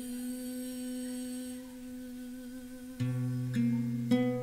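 A woman's voice holding one long, steady note on the word "you". About three seconds in, an acoustic guitar comes in with a low plucked bass note and a second pluck under the fading voice.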